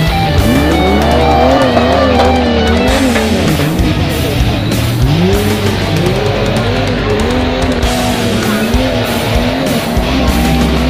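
Off-road jeep engine revved hard under load as it climbs a steep dirt slope, its pitch rising and falling over and over. Rock music with guitar plays underneath.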